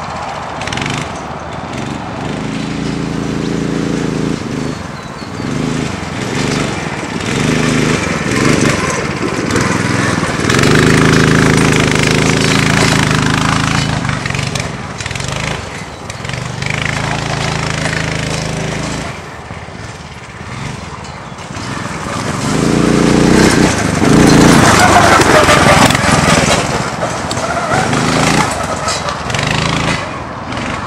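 Small 9 hp engine of an off-road go-kart, revving up and down as the kart drives around. It grows louder and fainter several times, and is weakest about two-thirds of the way in.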